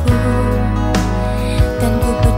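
Indonesian pop song playing: a full band arrangement with a steady bass line, sustained chords and occasional drum hits.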